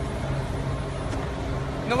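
Low, steady rumble of a bus engine idling, with faint voices behind it.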